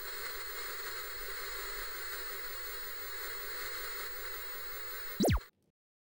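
Old television static, a steady hiss, then a little over five seconds in a short, loud zap falling in pitch as the set switches off, and the sound cuts out completely.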